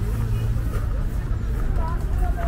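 Steady low rumble of road traffic, with a low hum from a vehicle engine that fades out under a second in, and faint distant voices over it.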